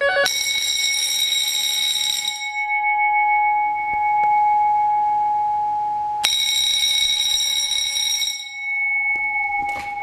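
Electric fire bells ringing in two bursts of about two seconds each, four seconds apart, in the cadence of an incoming telephone ring. The bells are set off by a Wheelock KS-16301 phone bell relay, which turns the phone's ringing voltage into 120 V AC. A single steady tone holds between the bursts.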